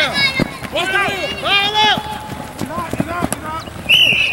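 Men's voices shouting calls to one another outdoors, loudest in the first two seconds and again around the third second.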